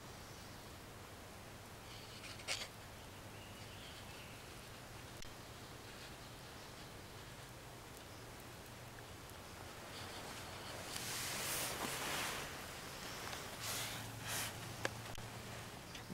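Quiet woodland camp ambience with a faint hiss and a single click about two and a half seconds in, then rustling of hammock and tarp fabric as the camera is handled, loudest around eleven to twelve seconds in.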